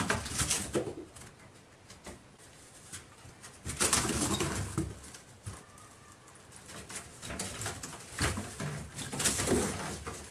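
Cats scrambling through a maze of cardboard boxes: scuffling, scratching and bumping against the cardboard walls in three bursts, at the start, about four seconds in, and near the end.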